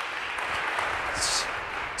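Audience applauding, a steady wash of many hands clapping.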